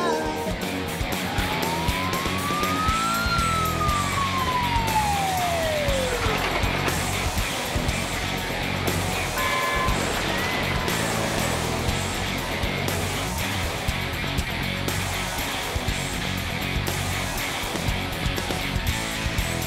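A fire-engine siren winds up once and dies away over a few seconds early on, over background music and the sound of the vehicle convoy.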